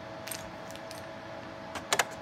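Light clicks and rattles of a cardboard box's white plastic insert tray being handled: a small cluster early on and a sharper pair near the end.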